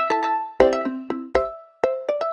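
Background music of short, bright struck notes in a quick melody, each note dying away fast, with two low thumps underneath.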